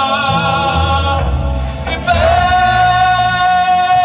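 A man singing a gospel worship song into a microphone, amplified through loudspeakers over a low accompaniment. His melody moves for the first half, then he holds one long, steady high note to the end.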